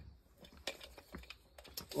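A few faint, sharp clicks and taps as a tape measure is picked up and handled, ready to measure the vice's jaw opening.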